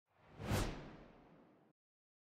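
A whoosh sound effect marking an animated slide transition. It swells to a peak about half a second in and fades away over the next second.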